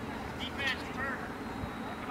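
Distant, high-pitched shouts and calls from people at a youth soccer game, a few short calls about half a second and a second in, over a steady background hiss.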